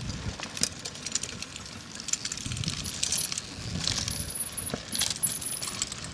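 Downhill mountain bikes clattering over rocky ground: rapid metallic ticks and rattles over a low rumble, with a faint thin high-pitched tone from about four to six seconds in.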